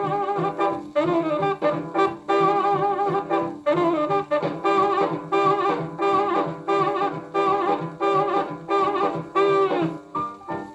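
A 78 rpm shellac record of 1940s jump blues playing through an HMV 2001 record player's built-in speaker: a saxophone section repeats a short riff over a steady swinging beat.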